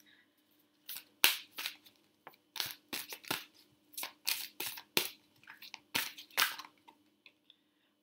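A deck of Rumi oracle cards being shuffled by hand: a string of short, irregular rustling riffles of card stock over several seconds, with a faint steady hum underneath.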